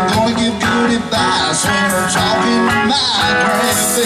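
Live rock band playing an instrumental stretch, electric guitar over drums.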